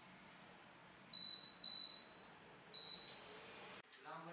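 Three short, high electronic beeps about a second apart from an induction cooktop's touch controls, as it is switched on and set. A brief hiss follows just before the end.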